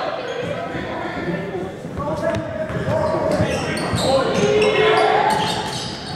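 Basketball bouncing on a hardwood gym floor, heard as short repeated thuds, under shouts and chatter from players and spectators in a large gym.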